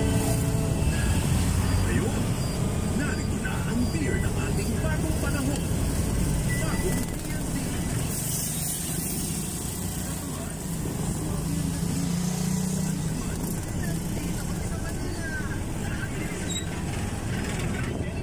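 Motorcycle engine and road noise from a moving motorized tricycle, a steady low rumble with an engine hum, and indistinct speech in the background.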